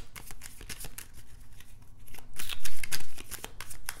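A deck of tarot cards being shuffled by hand: a quick run of papery card clicks and flutters, loudest a little over halfway through.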